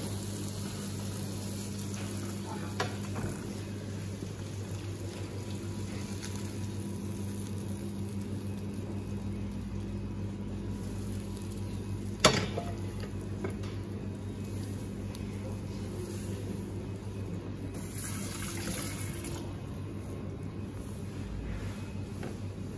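Fish fillet frying skin-side down in a pan, a light steady sizzle over a steady low hum. One sharp clack of metal utensil on the pan about twelve seconds in.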